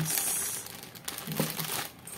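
Sealed plastic packs crinkling as they are lifted and handled by hand, loudest in the first half second.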